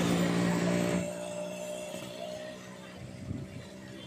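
Steady engine hum, loudest in the first second and then fading away.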